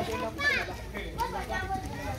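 Children's voices and people chattering, with a high child's voice rising sharply about half a second in.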